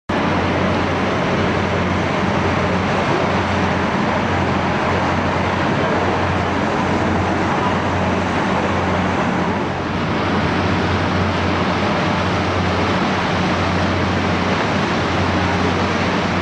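Steady low engine hum of a boat under way, with an even rush of wind and churning wake water.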